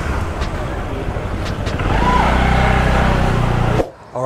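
Street ambience with motor-vehicle traffic: an engine gets louder about halfway through as a vehicle comes close, with a passer-by's voice briefly heard. The sound cuts off suddenly just before the end.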